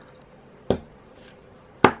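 Two sharp little clicks, the second louder, from handling a metal enamel pin: its gold butterfly clutch backs being pulled off and the pin fitted to a card backing.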